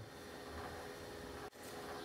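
Quiet room tone: a faint steady hiss with a faint low hum, and a brief dropout about one and a half seconds in.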